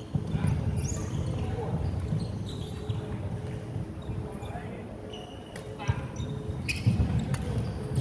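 Indoor sports-hall sound from badminton: sports shoes squeaking on a wooden court floor and footsteps, with a few sharp racket hits on shuttlecocks in the second half, over the murmur of voices in the hall.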